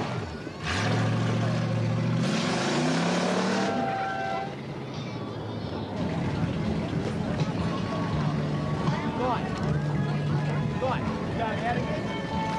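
Competition car's engine revving hard, its pitch climbing steadily for about three seconds, with a rushing noise over it, then dying away about four seconds in. Crowd voices follow.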